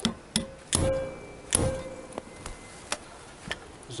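Hammer blows on a hand impact driver to break free seized, corroded float-bowl screws on Kawasaki ZX-6R carburettors. There are several sharp metal strikes in the first second and a half, and the two loudest ring on briefly. Lighter clicks and taps follow.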